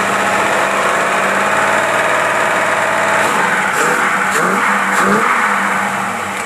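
Engine fed by a Holley 1850-5 four-barrel carburetor running revved up and held steady, the fuel mixture leaning out as the revs hold. Its note changes slightly a little past halfway.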